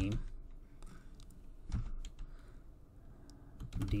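Computer keyboard being typed on: a handful of separate, unevenly spaced keystrokes.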